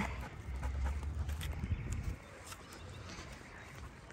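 Faint footsteps of a person and a dog walking on a paved path, a few soft ticks, under a low rumble on the body-worn microphone that eases off about halfway through.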